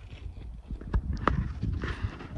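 Footsteps and loose rocks knocking and clicking underfoot on a rocky ridge, irregular, with a few sharper clicks about a second in, over a low wind rumble on the microphone.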